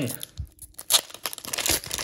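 Foil wrapper of a Pokémon Shining Fates booster pack being torn open across its crimped top, a run of irregular crinkling rips, the sharpest about a second in.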